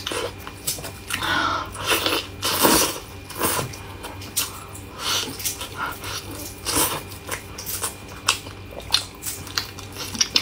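Close-miked eating: a person biting, tearing and chewing braised meat off a bone, with irregular wet bites and smacks, the loudest a little under three seconds in.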